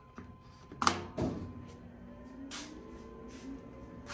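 A sharp click a little under a second in as the 100W CO2 laser cutter is started. Then the laser head's axis motors whine with a slowly rising pitch as the machine runs its homing sequence.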